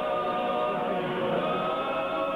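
Church choir singing Orthodox chant in long held chords, moving to a new chord about one and a half seconds in.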